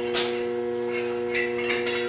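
A few light metal clinks as steel pipe coupons and a thin rod held in the joint as a gap spacer are handled, over a steady hum of several held tones.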